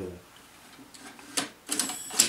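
Several sharp plastic clicks and rattles starting about one and a half seconds in, from the enlarger's negative carrier being worked loose and pulled out of the enlarger head.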